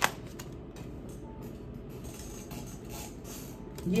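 Tarot cards being handled softly, with a few faint slides and rustles as the deck is worked and a card is dealt onto the table, over a low steady hum.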